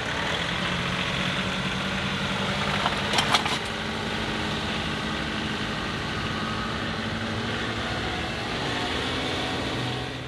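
A John Deere 2038R compact tractor's three-cylinder diesel engine running steadily as the tractor works its loader bucket across the ground, with a few sharp knocks about three seconds in.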